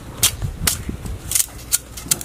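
Several sharp, short clicks, four or so, at uneven intervals.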